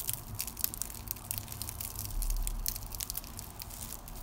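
Crisp, flaky yufka börek pastry being pulled apart by hand, its layers crackling in a run of small, sharp cracks. The crackle shows the pastry is still crisp a day after baking.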